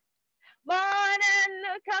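A woman singing a gospel praise song solo and unaccompanied, heard over a video call; after a short silence she comes in about two-thirds of a second in on a phrase of held, steady notes.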